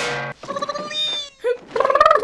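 A high-pitched voice crying out in short, wavering wordless wails.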